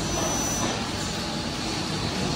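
48-cavity PET preform injection moulding machine and its take-out robot running: a steady mechanical factory noise. A thin high whistle sounds for about the first half-second.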